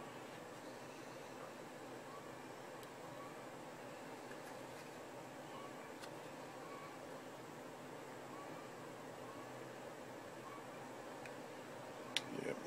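Low steady background hiss with a few faint light clicks and rustles as fingers work paracord through the plastic knife sheath.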